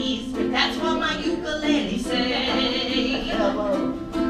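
Live singing with ukulele accompaniment, including a long held note in the middle.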